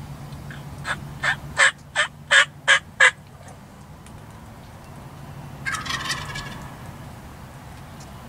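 Wild turkey calls: a run of seven loud, sharp yelps about three a second, then a few seconds later a shorter, quieter rattling gobble.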